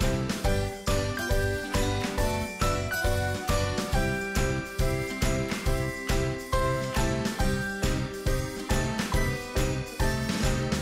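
Background music: a quick melody of short, bright pitched notes over a steady beat of about two a second.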